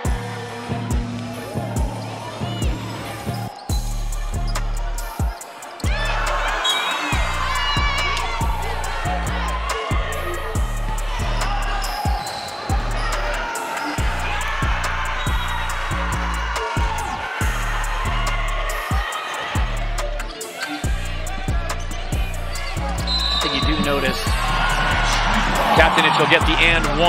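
Music with a steady, heavy bass beat and a vocal line over it; the bass fills out about four seconds in.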